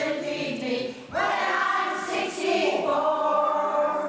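A choir of elderly singers singing held notes, with a brief break about a second in before the next phrase.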